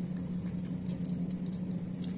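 Wet cloth bundle of boiled flax seeds squeezed by hand over a steel bowl: soft squelching and dripping patter of the gel being pressed out, over a steady low hum.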